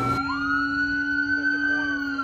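Police car siren wailing in one long slow sweep, rising in pitch and then gently falling, with a steady low hum beneath it.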